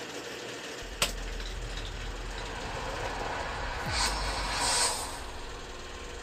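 Cinematic sound design from a teaser video played back: a deep steady rumble that comes in just under a second in, with a sharp click just after it and airy whooshing swells about four to five seconds in.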